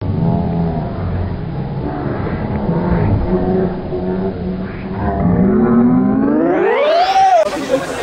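Replay sound effect laid over the footage: a low, steady drone that rises steeply in pitch about five seconds in, peaking shortly before the end.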